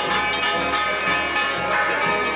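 Church bells ringing a fast, continuous festive peal, fresh strokes falling several times a second over the lingering ring.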